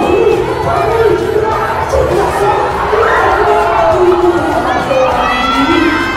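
A crowd of schoolchildren shouting and cheering, many voices overlapping at once during a futsal match.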